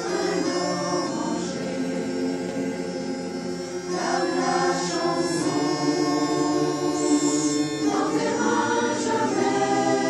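Mixed choir of men and women singing, holding long sustained chords that change about every four seconds.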